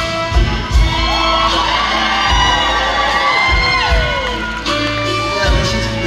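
A live band plays with low bass notes and drum beats, and audience members whoop and cheer over the music, mostly in the middle seconds.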